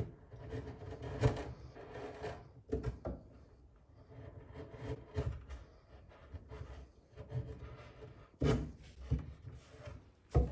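Hand wood chisel paring and scraping wood in short, irregular strokes, cleaning up a cut so the newel post's notch will fit. A couple of louder knocks come near the end.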